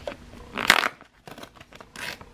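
Paper rustle and a short sharp rip as a printed packing slip is pulled and torn off a thermal label printer, loudest about two-thirds of a second in, followed by a few small paper clicks.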